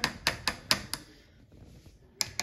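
A quick run of about five sharp taps or knocks in the first second, then only faint room sound.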